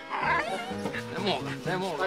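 Dog whining in short rising and falling cries, over background music with held notes.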